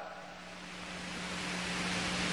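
Steady background hiss of a lecture recording with a faint low hum, slowly growing louder; no speech.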